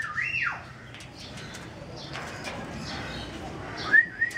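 Two short whistled notes, each rising and then falling in pitch: one right at the start and one near the end, with faint scratching and rustling between.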